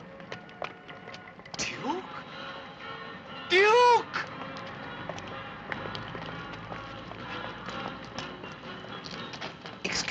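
Film soundtrack: background music over a bed of scattered light taps and clicks, with a short, loud note that rises and falls in pitch about three and a half seconds in.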